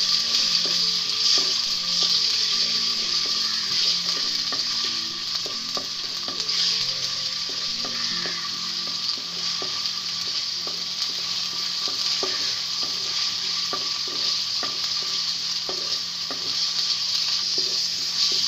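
Food sizzling steadily in hot oil in an aluminium pan, stirred with a wooden spatula that scrapes and knocks against the metal in short, irregular ticks.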